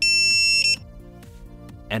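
A single loud electronic beep, a steady high tone lasting about three quarters of a second, over quiet background music.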